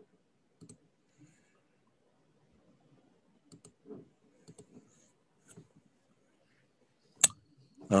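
Quiet room with faint, scattered clicks and taps, and one sharp, louder click near the end.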